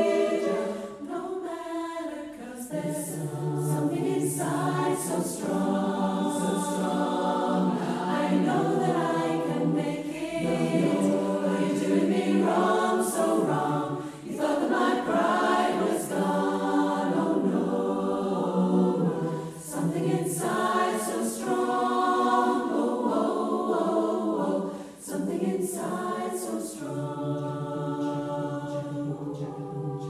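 A choir singing a slow piece with long held chords.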